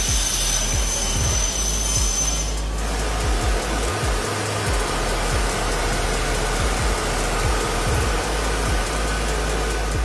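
Plastic suitcase-shell thermoforming machine running with a steady rush of air noise and a low hum as it forms a heated sheet into a case shell; a thin high whine stops about two and a half seconds in.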